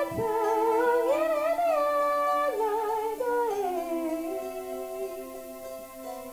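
A woman humming a wordless melody over sustained keyboard piano chords. The line wavers, rises, then steps down, and the whole fades toward the end as the song closes.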